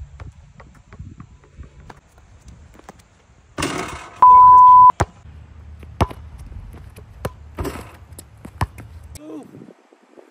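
A basketball dribbled on an outdoor hard court: a few sharp bounces spaced about a second apart. About four seconds in, a loud, steady beep tone lasts under a second and is the loudest sound.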